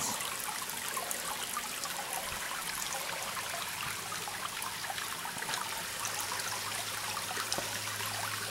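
A small tiered copper fountain trickling, with water spilling steadily from its rims into the pond water below.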